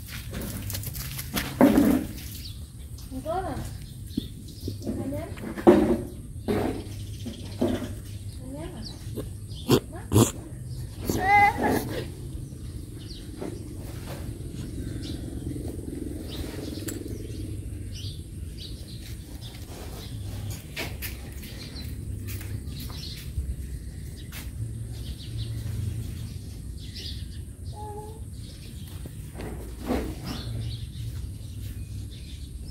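Young dogs growling in short bouts during rough play, a string of brief growls and grumbles over the first twelve seconds or so.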